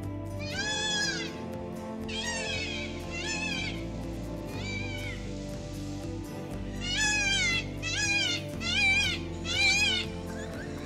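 A peafowl calling: eight loud, wailing, meow-like calls that rise and fall in pitch, the last four coming closer together and louder, over soft background music.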